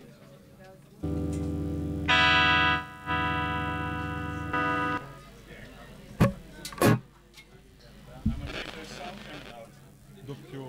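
Amplified guitar sounding a held note for about four seconds, swelling once and then cutting off sharply. Two sharp knocks follow.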